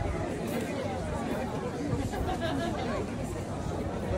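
Indistinct chatter of several people talking in a crowd, no single voice standing out.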